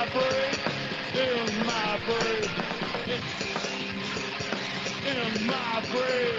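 A rock band playing live on drums and electric guitars, with a melodic line that slides down in pitch about once a second, heard through a video-call stream.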